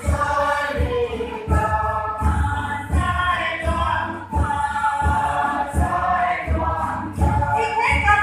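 A group of voices singing together over a regular low thump that keeps time about every third of a second.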